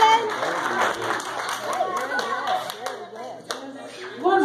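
Scattered clapping from a small audience, with children's voices talking and calling over it.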